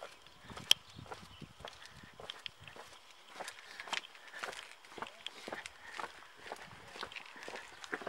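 Footsteps on a rocky, gravelly trail: irregular scuffs and crunches of several people walking, with one sharper click about a second in.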